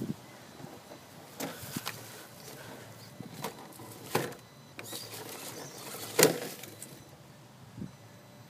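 Dry fallen leaves crunching and crackling in scattered short bursts over a low, quiet background, the loudest about six seconds in.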